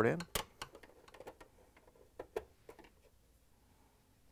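Quarter-inch nut driver backing out the screws that hold a dishwasher's electronic control board in its sheet-metal tray: a series of faint, irregular small clicks and taps.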